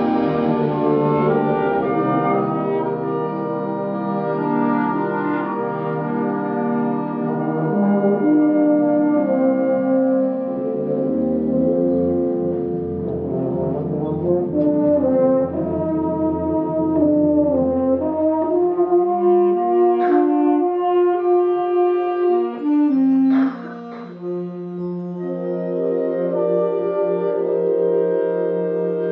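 Concert wind band playing a slow passage of held, brass-led chords that change slowly. A low bass line comes in partway through and drops out again. Two sharp accents sound in the last third, and the music dips briefly before settling on a softer sustained chord.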